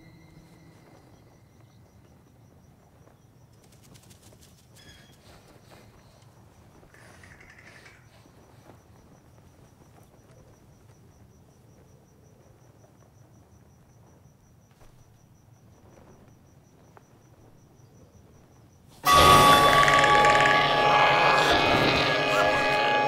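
Faint outdoor quiet with a thin, steady high-pitched trill like an insect. About nineteen seconds in, a sudden loud, dense music stinger from the horror score cuts in and holds.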